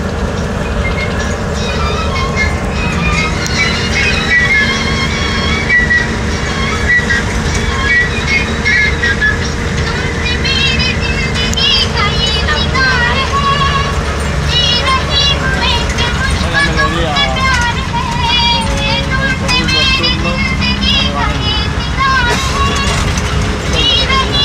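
Music played loudly over a bus's radio, with high, wavering singing that grows stronger about halfway through, above the steady rumble of the bus engine.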